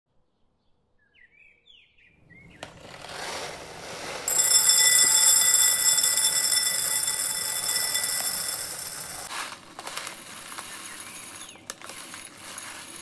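Dry whole mung beans poured in a stream into a ceramic bowl, starting a few seconds in: a rattling hiss of beans striking the bowl, with the bowl ringing at several high pitches. About nine seconds in the ringing stops as the beans pile up, leaving a softer patter with scattered clicks.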